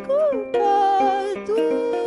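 A woman singing held, wavering notes over a kora, the West African gourd harp, plucked in short notes beneath her.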